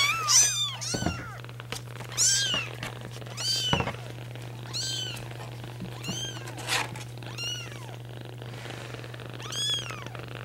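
Young kittens, about three and a half weeks old, mewing repeatedly: about eight short, high-pitched mews, each rising then falling in pitch, at irregular intervals.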